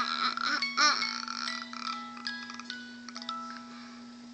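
Wind-up musical plush sheep toy playing a simple tinkling music-box tune, its clear single notes getting fainter toward the end. A child's brief vocal sound comes in about a second in.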